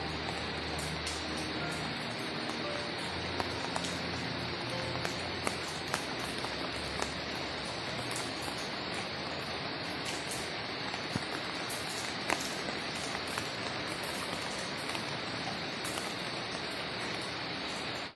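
Light rain falling in a steady hiss, with scattered sharp drip ticks. Faint background music notes sound under it in the first few seconds.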